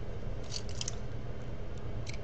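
A few faint, light clicks and rustles of thin black craft wire being pulled off its spool, over a steady low hum.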